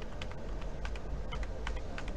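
Computer keyboard keys being pressed in a quick, irregular run of clicks as lines of code are deleted, over a steady low hum.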